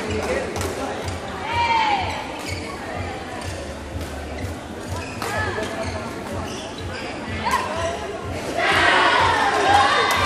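Badminton play in a large sports hall: sharp knocks of rackets hitting the shuttlecock and quick squeals of shoes on the court floor, with spectators' voices behind. Near the end the crowd grows louder, shouting and cheering.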